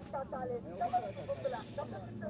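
Indistinct voices talking, with a hiss running under them.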